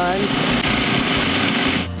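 Food processor motor running steadily, blending beet hummus as olive oil is drizzled in for the final emulsifying step. It cuts off abruptly near the end.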